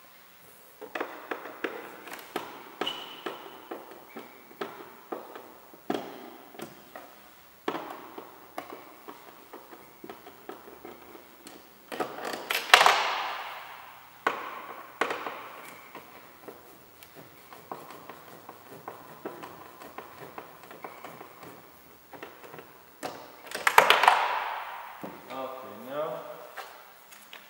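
Clicks and knocks of a tool working the plastic rear door trim panel of a Volvo S60. There are two loud sharp snaps, one about halfway through and one near the end, as the panel's retaining clips are prised loose.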